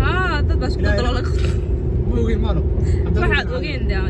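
Steady low road and engine rumble inside a moving car's cabin, under people talking.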